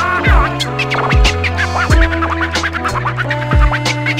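A hip hop beat with deep, pitch-dropping kick drums and a held bass line, while a DJ scratches over it on the decks in quick back-and-forth strokes as an instrumental break.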